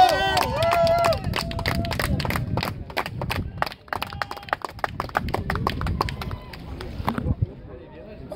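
Men's voices shouting briefly at the start, then a quick, irregular run of sharp clicks for about six seconds that dies away near the end.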